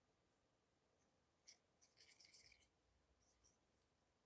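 Near silence, broken by a few faint, short scratchy rubbing sounds about one and a half to two and a half seconds in and again briefly near the end: small handling noises of the resin tools and cups.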